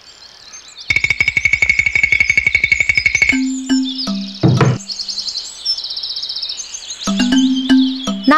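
Cartoon sound effects: a fishing reel clicking rapidly, about a dozen clicks a second, with a steady whistle-like tone, as a fish is reeled in. Then a single low thud as the fish lands on a wooden boat floor. Bird chirps and short musical notes run underneath.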